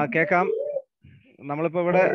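A person's voice over a video call: a short voiced utterance, a pause of about half a second, then speech starting again near the end.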